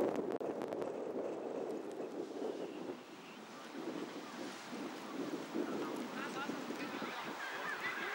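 Cricket players' voices calling out across the open field, unclear and without distinct words, with wind noise on the microphone.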